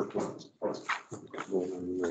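Indistinct, mumbled speech with no clear words.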